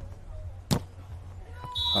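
A beach volleyball struck hard once, a sharp smack, followed near the end by a short, steady, high referee's whistle signalling the end of the rally.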